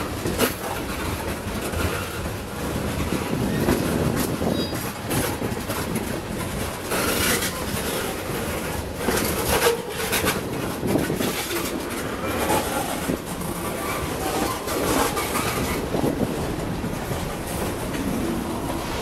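Norfolk Southern manifest freight train's tank cars and boxcars rolling past at close range: steady rumble of steel wheels on rail with irregular clacks and knocks as the wheels cross rail joints.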